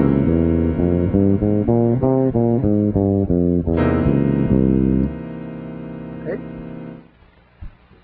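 Solo electric bass guitar playing a quick run of notes stepping up and down the Spanish Phrygian scale over sustained chord tones, with a fresh chord struck about four seconds in. The run ends on tones left ringing for about two seconds before they die away.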